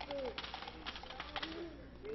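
Low murmur of children's voices, with faint rustling and light ticks.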